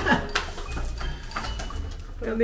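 Handheld walkie-talkie between transmissions: a short click about a third of a second in, then faint static, over a steady low hum.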